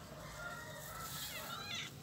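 Birds calling: short faint whistled notes, then a quick run of gliding chirps in the second half.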